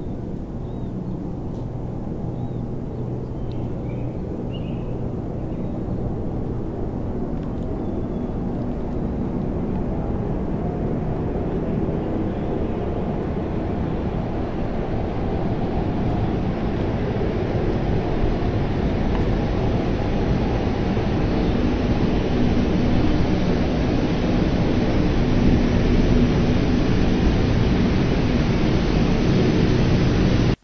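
Low rumbling drone of a horror-film score, with faint steady low tones under a rushing hiss, swelling steadily louder as it builds tension.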